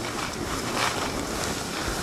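Steady rushing noise of wind on the microphone mixed with snowblades sliding and scraping over packed, groomed snow during a downhill run, with a slightly louder scrape under a second in.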